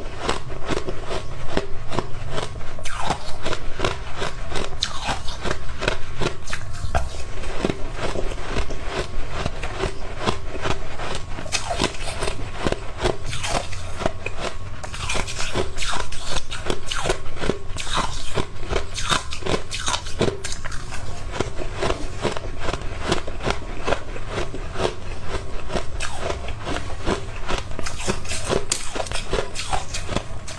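Close-miked crunching of hard ice balls being bitten and chewed: a dense, continuous run of sharp cracks and crunches.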